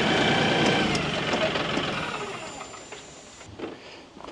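LS compact tractor's diesel engine running, then dying away over the next two seconds or so until it is faint.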